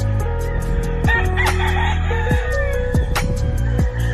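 A gamecock crowing about a second in, over background music with a steady beat.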